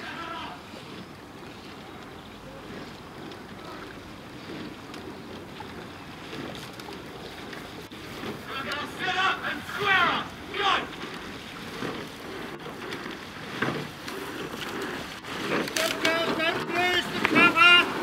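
Wind buffeting the microphone over a steady outdoor hiss, then from about eight seconds in, shouted calls urging on a rowing crew. The calls rise and fall in pitch and come back louder near the end as the boat draws close.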